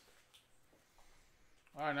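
Faint rustling and a few light clicks as a foil trading-card pack is handled. A man's voice comes in near the end.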